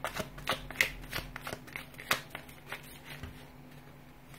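A deck of tarot cards being shuffled by hand: a quick, irregular run of card clicks that thins out and stops a little after three seconds, over a faint steady hum.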